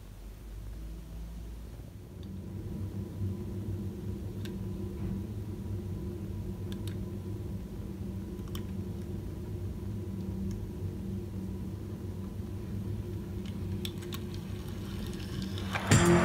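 Steady low mechanical hum that grows a little louder over the first few seconds, with a few faint light clicks scattered through it.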